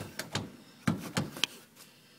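Brass doorknob on a locked interior door being turned and jiggled: a series of metallic clicks and knocks in two clusters, the loudest about a second in.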